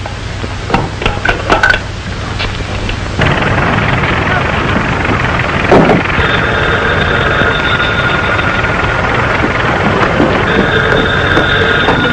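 Old desk telephone bell ringing in two rings, the second near the end, over a steady background rumble.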